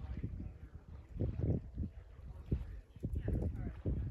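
Elk trotting through shallow lake water, an uneven series of low splashing steps.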